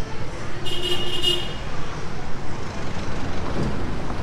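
Street traffic on a busy road, with motorbike and car engines passing steadily. A short, shrill tone sounds about a second in.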